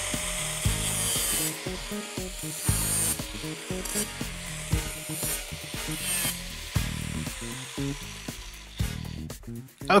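Angle grinder with a cut-off disc running and cutting through a steel flat bar held in a vise, a hissing grind that swells and eases in several short passes. The cutting stops just before the end.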